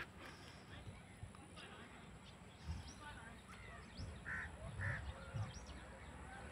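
Faint outdoor ambience with scattered distant bird calls. Two short, alike calls come about half a second apart past the middle.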